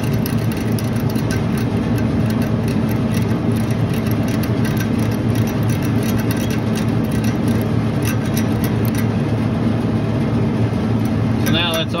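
Refrigeration machinery running with a steady low hum, over which a ratcheting wrench clicks in quick runs as a king valve stem is turned open; the clicking stops about three-quarters of the way through, with the valve open.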